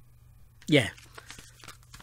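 A short spoken "yeah", followed by faint scattered rustling and clicking from something being handled close to the microphone.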